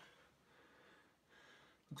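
Near silence, with two faint breaths from the person carrying the camera.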